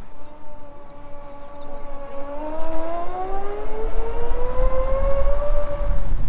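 Electric scooter motor whining, holding one pitch for about two seconds and then rising steadily as the scooter speeds up. Wind rumbles on the microphone underneath.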